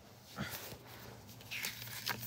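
Faint handling of a paper CD booklet as it is picked up and opened, with two brief soft sounds, about half a second and a second and a half in, over a low steady hum.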